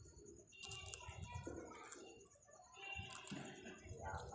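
A rose-ringed parakeet nibbling and crunching food held in its foot: faint crisp clicks from its beak, in a cluster about half a second to a second in and another around three seconds in.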